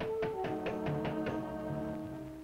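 A quick run of about seven light hammer taps, roughly six a second, stopping about a second and a half in, over the orchestral cartoon score.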